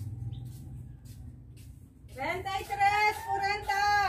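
A high-pitched human voice holding one long sung note for about two seconds, starting about halfway in, sliding up into it and dropping off at the end. Before it, a low hum and a few faint clicks.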